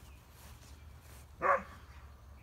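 A dog barks once, a single short bark about one and a half seconds in.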